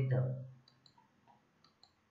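A man's speaking voice trails off in the first half second, followed by faint short clicks, two pairs of them.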